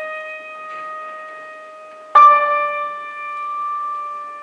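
Slow, sparse piano music: a held note rings on, then a new note is struck about two seconds in and left to ring out.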